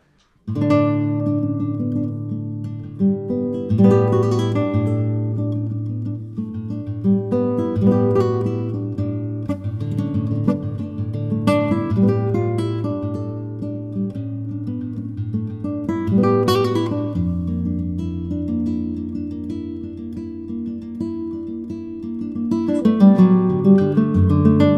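Solo nylon-string classical guitar played slowly with the fingers: sustained low bass notes under plucked melody notes, with chords rolled across the strings every few seconds. It begins about half a second in, and the bass moves lower about two-thirds of the way through.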